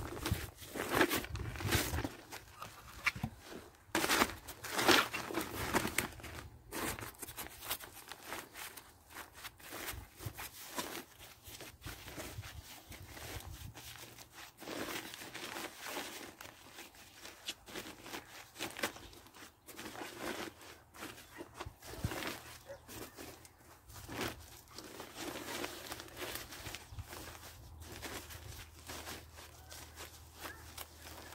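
Black woven weed-control membrane rustling and crackling as it is handled, pulled flat and tucked into the edges of a bed. The rustling comes in irregular bursts, loudest in the first few seconds and softer after.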